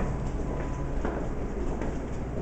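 Footsteps at walking pace on a hard corridor floor, a soft knock about every three-quarters of a second, over a steady low rumble.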